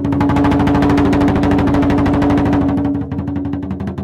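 Dragon dance percussion music: a very fast, rolling drumbeat with a strong held low tone, louder for about three seconds and then easing.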